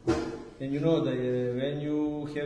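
A man's voice drawing out long, near-steady syllables rather than normal quick speech, after a brief knock at the start.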